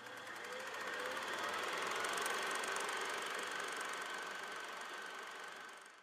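A machine-like whirring with fine, rapid ticking, swelling up over the first two seconds and then fading away, used as a sound effect in an animated logo intro.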